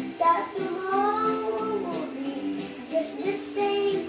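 A boy singing a slow pop melody along to a karaoke backing track, holding and gliding between notes.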